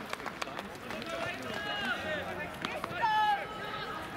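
Voices calling and shouting across an outdoor football pitch, a loudest call about three seconds in, with scattered sharp clicks.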